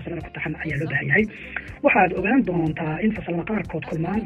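Speech only: a voice talking in Somali, with a short pause near the middle.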